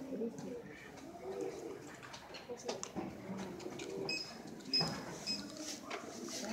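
Quiet, muffled voices talking in the background, with a few brief high-pitched beeps about four to five seconds in.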